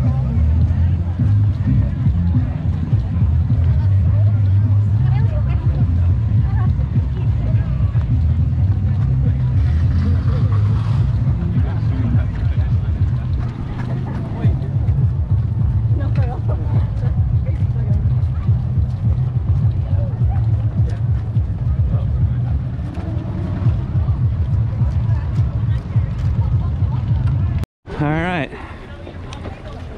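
Wind buffeting the microphone of a camera carried by a runner: a steady low rumble with faint chatter from the surrounding pack of runners. It cuts out abruptly near the end.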